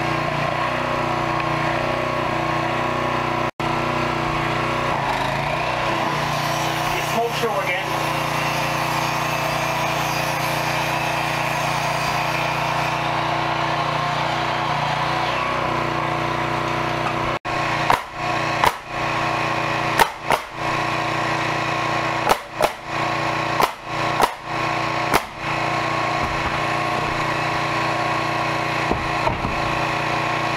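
A small engine running steadily at a constant speed. The drone is broken by several short gaps, most of them in the second half.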